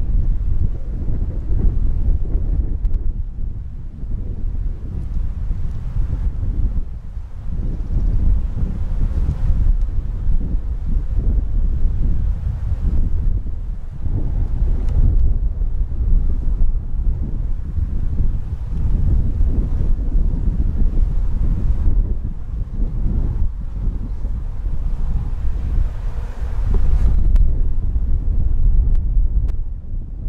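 Wind buffeting the camera microphone: a loud, low rumble that rises and falls in gusts.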